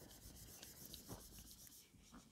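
Faint rubbing of a felt whiteboard eraser wiping marker off a whiteboard, with a few small bumps along the way.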